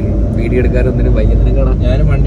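Steady low rumble of a moving car's engine and tyres heard from inside the cabin, under talk and laughter.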